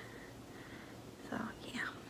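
A woman's faint, breathy whispering or murmur, lasting about half a second and coming about a second and a half in, over quiet room tone.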